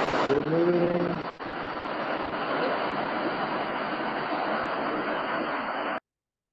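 Heavy rain, a steady dense hiss, heard through a participant's open microphone on a video call; it cuts off suddenly at the end.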